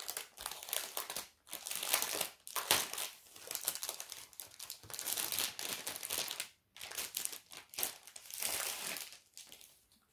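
Crinkling and rustling of a cross-stitch kit's packaging as its contents are pulled out, in irregular bursts with short pauses.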